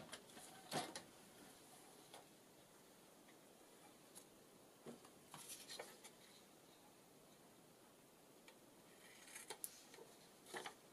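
Faint snips of small scissors cutting a paper tag, with light rustling of the paper as it is handled: a few scattered short clicks, a cluster a little past the middle and another near the end.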